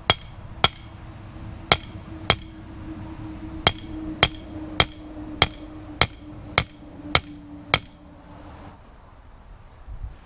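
A hammer striking a metal horseshoe stake, driving it into the ground: about a dozen sharp, ringing metal-on-metal blows. Two pairs of blows come first, then a steady run of about eight, close to two a second, which stops a couple of seconds before the end.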